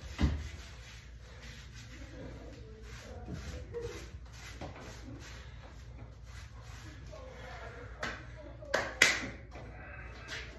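Hands rubbing in lifting chalk, with a dull thump just after the start and a few sharp claps near the end, the last and loudest about nine seconds in.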